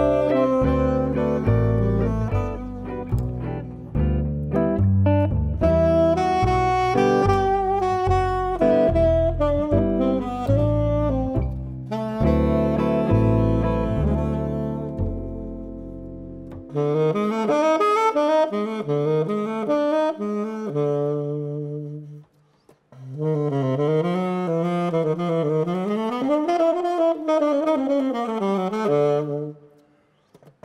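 Tenor saxophone improvising a jazz line over a double bass line. About halfway through, the bass drops out and the saxophone carries on alone, pausing briefly before its last phrases.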